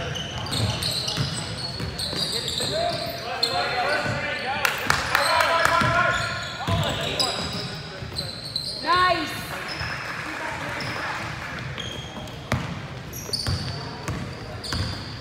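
Indoor basketball game on a hardwood court: a basketball bouncing, sneakers squeaking sharply on the floor (loudest about nine seconds in), and players' and spectators' voices, all echoing in the gym.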